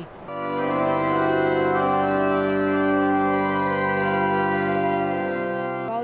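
Church pipe organ holding one full, sustained chord. The bass notes drop away shortly before it stops.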